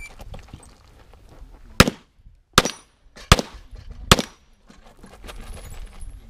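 Four pistol shots, about three-quarters of a second apart, fired in quick succession during a practical-shooting (IPSC) course of fire.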